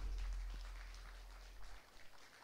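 The final chord of an electronic keyboard ensemble dying away, fading steadily to near silence, with a low bass note lingering and cutting off shortly before the end.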